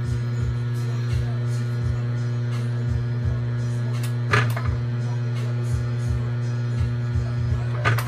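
Bridgeport milling machine running with a steady hum, set up for power tapping. Irregular light knocks, with a sharp metallic click about four seconds in and another near the end.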